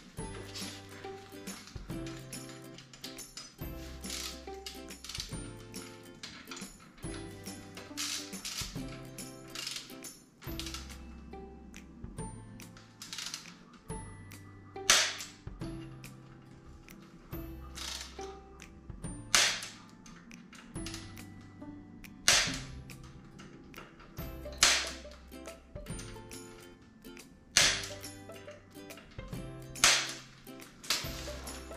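Background music with a steady beat, over which a click-type torque wrench gives six sharp clicks from about halfway through, two to three seconds apart, each click marking that a fork pinch bolt has reached its set torque.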